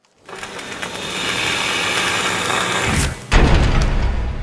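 Logo-reveal sound effect: a noisy swell that builds for about three seconds, then a sudden deep boom with a low rumble trailing after it.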